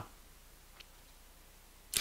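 A quiet pause in a man's speech: faint room tone with one small, short click a little under a second in. His voice trails off at the start and picks up again at the very end.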